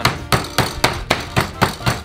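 Wooden rolling pin pounding a chicken breast sealed in a plastic bag on a wooden cutting board, flattening it, in a steady run of strikes about four a second.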